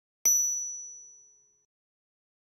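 A single bright, bell-like ding sound effect, struck about a quarter second in and fading out evenly over about a second and a half.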